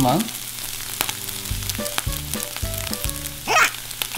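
Scrambled eggs sizzling steadily in a hot frying pan.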